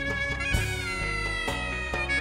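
Greek folk clarinet playing an instrumental phrase whose held note bends slowly downward, over a band accompaniment of bass notes and a regular beat about once a second.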